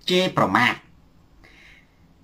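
A man speaking Khmer for under a second, then a pause with only faint room tone.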